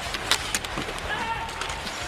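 Ice hockey arena sound during live play: a steady crowd hum with several sharp clacks of sticks and puck on the ice and boards.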